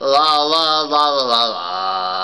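Singing of 'la la la' in a wavering, rising and falling line, settling into one long held note a little past halfway.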